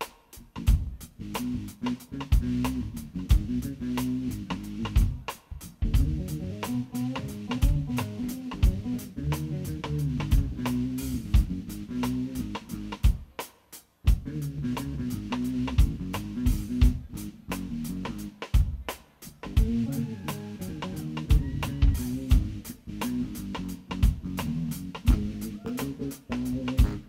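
Live band instrumental led by an electric bass guitar playing a busy line of low notes, with a drum kit keeping time underneath. The music drops away briefly about fourteen seconds in.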